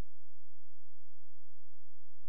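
A steady low hum that does not change, with no other sound.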